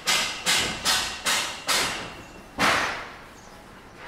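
Close footsteps of someone walking on an asphalt street, sharp scuffing steps about two a second. The loudest step comes about two and a half seconds in, and the steps stop after it.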